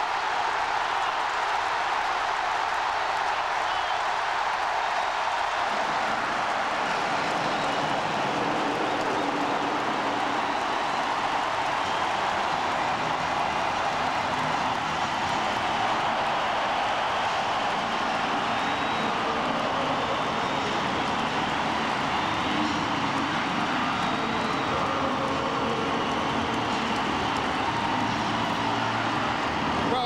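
Large stadium crowd cheering steadily and loudly, the home crowd celebrating a kickoff-return touchdown.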